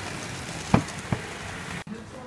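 Model train running on its track with a steady rushing hiss, and two sharp knocks about three quarters of a second and just over a second in. The sound cuts off abruptly just before the end.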